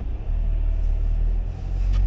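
Passing road traffic on a wet road: a steady low rumble that swells just after the start and fades just after the end.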